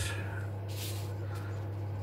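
A steady low hum, with a brief scuffing rub of a gloved hand brushing over the resin-and-beech beaker about three-quarters of a second in.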